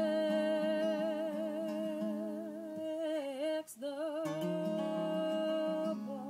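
A woman's wordless singing of long held notes with vibrato over an acoustic guitar. The voice dips and breaks off briefly a little past halfway, then holds the note again while the guitar moves to lower notes.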